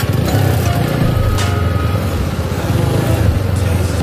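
Single-cylinder 160 cc motorcycle engine idling steadily with the bike standing still, a low even rumble.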